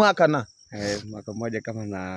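A cricket's steady high-pitched trill runs under men's voices: a few words at the start, a short breath, then a long, evenly held voice sound.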